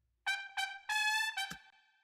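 A recorded trumpet, soloed, playing a short high phrase of three notes, the last one held longer, stopping about a second and a half in, followed by a short click.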